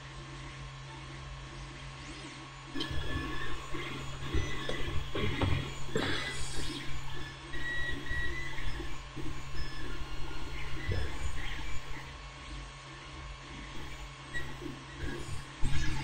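Close-up handling of a small folded paper model part: irregular rustles, scrapes and light taps of fingers on paper from about three seconds in to about twelve. A steady low hum runs underneath throughout.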